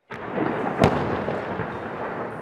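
Field audio of fighting in a town: a dense, steady rumbling noise with one sharp bang a little under a second in, the loudest moment, typical of a gunshot or shell blast.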